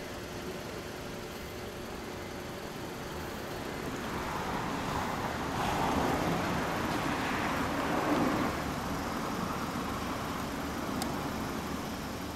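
A car passing on the street: its road noise swells over a few seconds in the middle and fades away, over steady traffic background.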